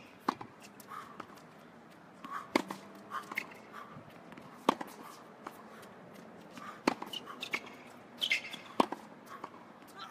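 Tennis balls being struck with rackets in a practice rally: sharp pops of the strings about every two seconds, with fainter knocks between them.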